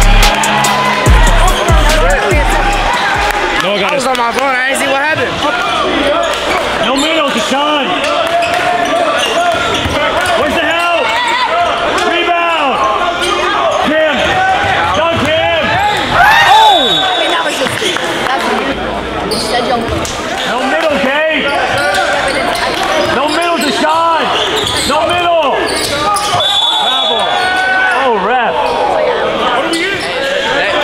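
Live basketball game on a hardwood gym court: the ball dribbling and sneakers squeaking again and again, with players' voices calling out, all echoing in the large hall.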